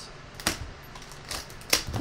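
A few sharp clicks and taps of a cardboard trading-card box being handled and opened by hand.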